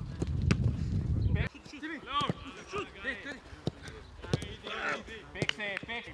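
A football being kicked on a grass training pitch, several sharp thuds of boot on ball among players' shouts. Wind rumbles on the microphone for the first second and a half, then cuts off suddenly.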